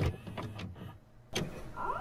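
VCR tape mechanism clunking into play, with a sharp click at the start and another about a second and a half in, then a rising whine as the tape comes up to speed near the end.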